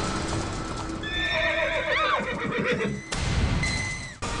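A horse neighs: a long, wavering whinny starting about a second in that rises and then falls away, over the clip-clop of galloping hooves.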